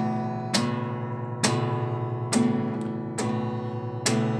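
Music: strummed guitar chords, a little under one a second, each left to ring out.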